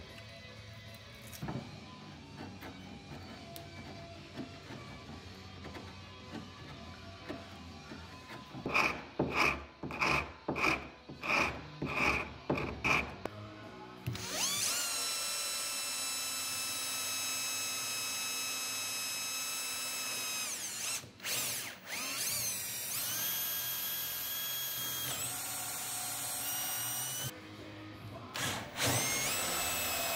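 Cordless drill-driver running steadily on a screw in old wooden boat timber, stopping briefly and then running again at changing speeds. Before the drill starts, a run of about eight short, sharp sounds comes at even half-second intervals.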